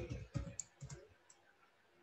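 Computer keyboard typing: a few faint key clicks over the first second or so.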